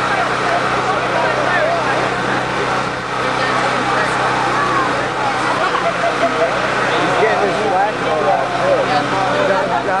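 Several people talking at once in overlapping chatter, with no single voice standing out, over a steady low hum.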